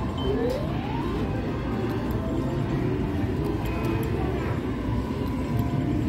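Casino floor ambience: a steady wash of distant chatter and machine noise, with a short rising electronic tone from a gaming machine soon after the start.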